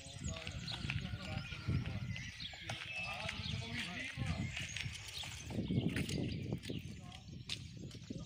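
A group of people talking among themselves outdoors, indistinct and at a distance, with a few sharp knocks near the end.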